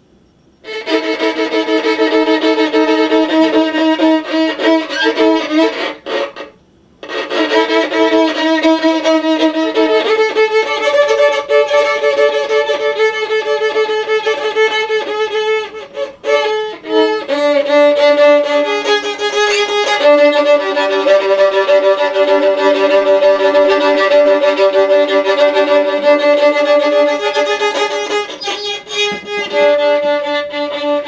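Three-quarter-size violin bowed in long sustained notes, often two strings sounding at once, starting about a second in, with a short pause about six seconds in.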